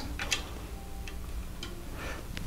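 Lego plastic pieces being handled and fitted onto the build, giving a few light, scattered clicks.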